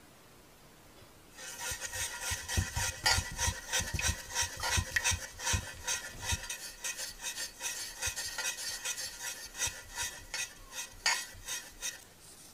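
Beads poured from a small plastic jar into a metal heart-shaped baking tin: a dense clattering patter of beads hitting and rattling in the tin. It starts about a second and a half in and stops just before the end, with a few dull knocks in the first half.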